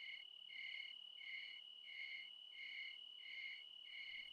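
Faint crickets chirping at night: a steady high trill with evenly spaced chirps over it, about three every two seconds.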